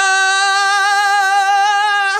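A single performer's voice for a puppet character, holding one long, steady high note on an open vowel with a slight waver.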